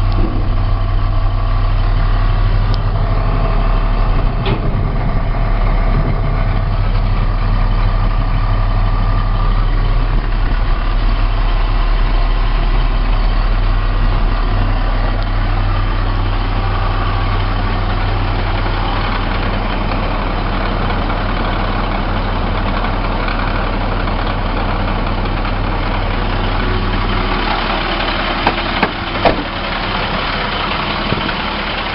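A 2003 International 7400 rear-loading packer truck's diesel engine idling steadily, with a few light clicks near the end.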